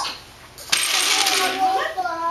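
Strands of plastic beads rattling and clattering on a plastic tray, starting suddenly about two-thirds of a second in.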